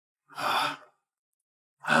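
A man's short, breathy sigh lasting about half a second, followed near the end by the start of a hesitant vocal sound.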